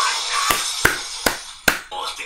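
Four sharp knocks, about two a second, over background music.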